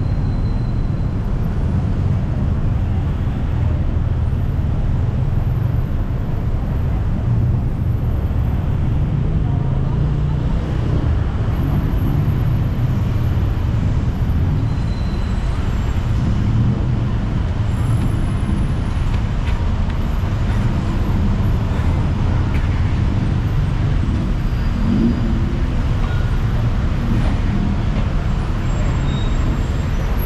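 Steady low rumble of busy city street traffic, vehicles running and passing continuously.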